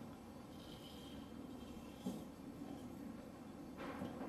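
Quiet workshop room tone with a low hum and one faint knock about two seconds in, as the front wheel is steered to full lock with the engine off.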